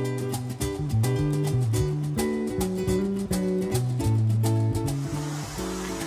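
Background music: plucked and strummed acoustic guitar with a steady rhythm, which thins out near the end.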